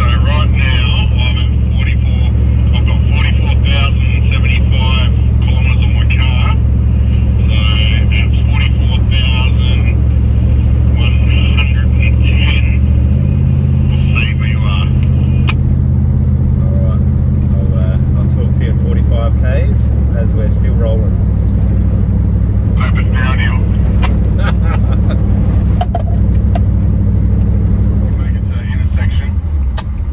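Nissan Patrol Y62's V8 and drivetrain droning inside the cabin while driving, a steady low hum. The drone shifts to a higher note about thirteen seconds in and changes again around nineteen seconds.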